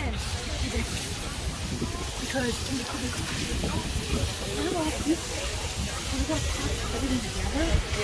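Indistinct voices talking in the background over a steady hiss and low rumble.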